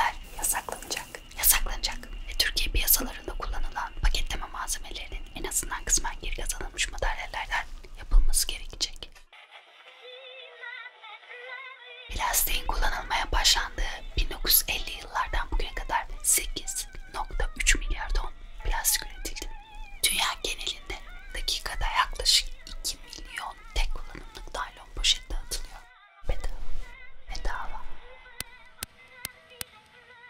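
A woman whispering close to the microphone over music, with frequent sharp clicks and crackles. About nine seconds in it drops for some three seconds to a quieter, thinner pitched sound, then the whispering and crackles return.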